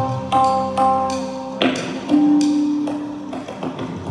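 Live music: a Yamaha MOXF synthesizer keyboard playing a repeating phrase of bell-like notes with sharp attacks, about two notes a second, over a held lower note.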